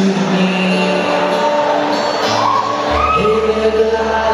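Live pop-rock song: strummed acoustic guitar with a man singing a slow, sustained line that rises in the second half, and a low bass note coming in about three seconds in.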